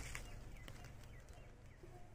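Quiet background with a steady low rumble, broken by a few faint, short chirps and light ticks.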